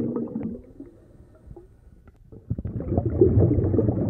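Bubbling, gurgling water that dies down to a quieter gap about a second in and comes back about two and a half seconds in.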